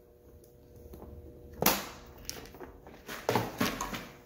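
Clear plastic organizer box being handled and put away into a plastic parts-organizer drawer: a sharp plastic click about a second and a half in, another a little later, then a quick cluster of clicks and knocks near the end.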